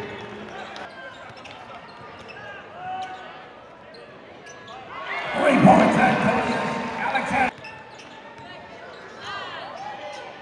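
Basketball game sound in an arena: a basketball bouncing on the court under a bed of crowd voices. About five seconds in the crowd's voices swell loudly, then cut off abruptly about two and a half seconds later.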